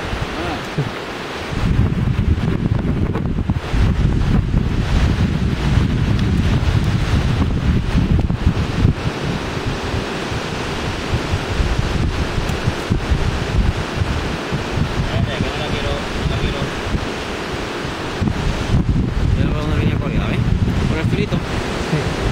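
Wind buffeting the microphone in gusts, a heavy low rumble, over the wash of small waves on a sandy beach. The wind eases briefly at the start and picks up again about a second and a half in.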